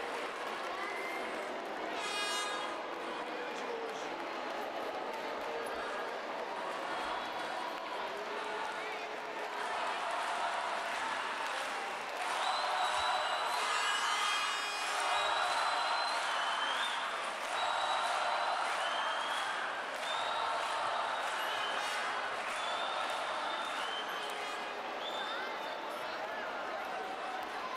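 A large crowd in a big sports hall cheering and shouting, many voices at once, with high calls and a couple of brief shrill blasts. It grows a little louder about halfway through.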